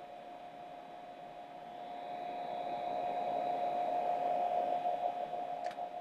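A slow, deep breath, heard as a soft hiss that swells over a few seconds and falls away near the end, over a steady faint hum. There is a small click just before the end.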